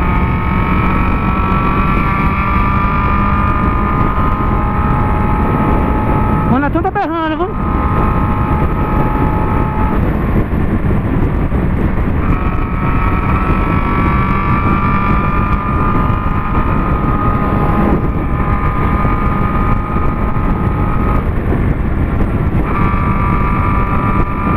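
Honda CB600F Hornet inline-four with an Atalla 4x1 exhaust cruising at highway speed, its engine note steady and slowly rising, under heavy wind and road noise on the helmet microphone. The engine tone drops out briefly twice, about ten seconds in and again near the end, as the throttle is eased.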